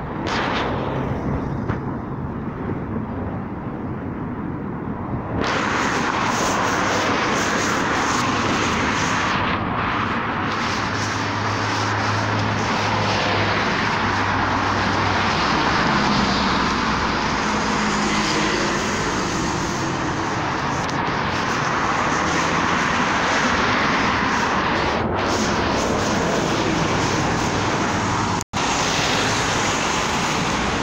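Steady road traffic noise with a low engine hum in the middle stretch. The sound jumps louder and brighter suddenly about five seconds in, and cuts out for an instant near the end.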